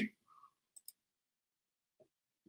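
A man's voice cuts off at the very start, then near silence on a muted video-call line, broken only by two faint clicks just under a second in.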